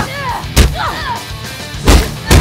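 Two heavy, booming punch impacts about a second and a half apart, over a music track: sound effects of superpowered blows landing in a fistfight.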